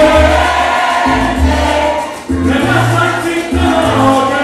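Live salsa band playing, with a male lead singer singing over it and a bass line moving in held low notes.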